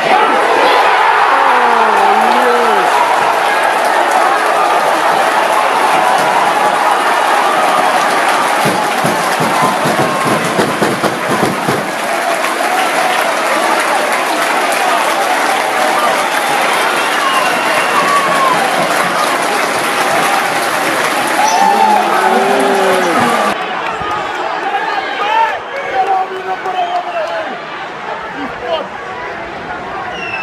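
Football stadium crowd: a loud, dense mass of voices with clapping and shouts or chants. About 23 seconds in it cuts abruptly to a quieter crowd murmur.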